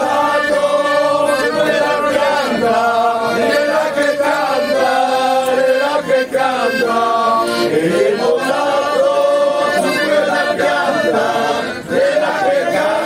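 A group of men singing a traditional folk song together in chorus, in full voice, with a short break for breath about halfway through.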